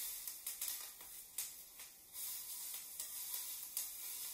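Oil-coated bell pepper strips sizzling and crackling as they go into a hot cast iron skillet, with a brief lull about halfway through.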